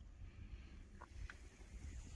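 Near silence: a faint low rumble, with two small clicks about a second in.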